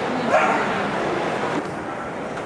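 Dogs barking over a steady din of crowd chatter in a large hall, with one louder bark about a third of a second in.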